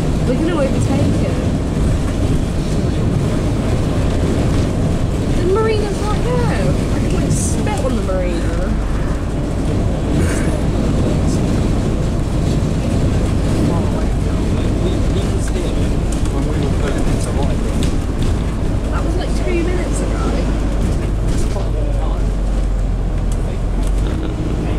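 Steady low rumble of a moving bus's engine and road noise heard from inside the passenger cabin, with indistinct voices over it.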